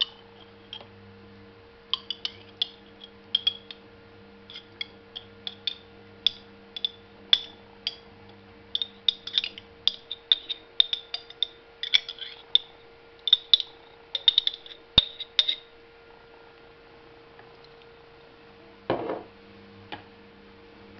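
Metal spoon scraping and clinking against the inside of a small glass jar of mayonnaise as it is scooped out, a quick, irregular run of light clicks lasting about a dozen seconds. A single duller knock follows near the end.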